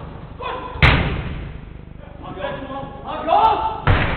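A football being struck: two loud thuds about three seconds apart, the first the louder, each echoing in the large hall. Players shout between them.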